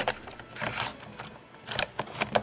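Plastic clicks and knocks of a plug-in AC adapter being pushed into the battery slot of a 1985 Sony CCD-M8U Handycam: a handful of scattered clicks, the sharpest near the end.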